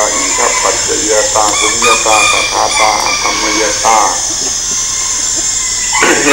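An elderly man's slow speech through a microphone, with a steady high hiss from the recording.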